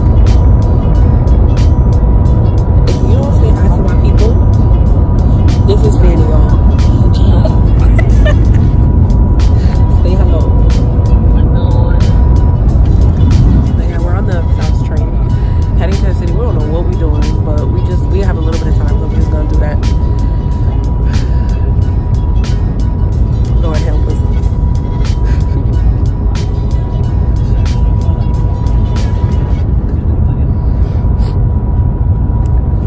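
Shanghai Maglev train cabin at speed: a loud, steady low rumble with a thin steady whine above it and scattered clicks. Voices and music sound over it.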